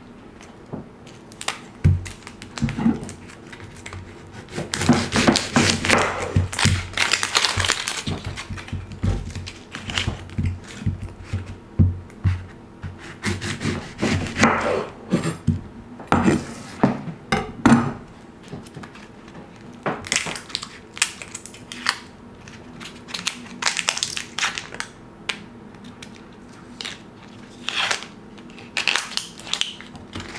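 Chef's knife cutting tomato and onion on a wooden cutting board, with uneven knocks of the blade on the board and bursts of crackling as dry onion skin is peeled by hand.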